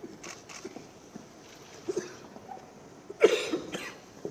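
A person coughs twice in quick succession about three seconds in, over the faint sounds of a crowd in a large hall.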